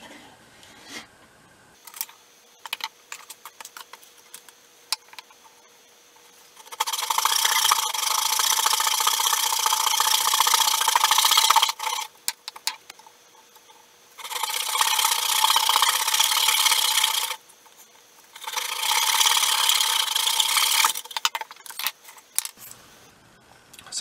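Coping saw cutting soft pine, in three long runs of rapid sawing strokes separated by short pauses. Before them come a few seconds of light taps and clicks, and a few more clicks follow near the end.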